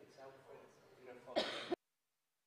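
Faint voices talking in a large hall, then a loud throat clearing close to the microphone about a second and a half in. Right after it the sound cuts off abruptly to dead silence as the microphone feed goes off.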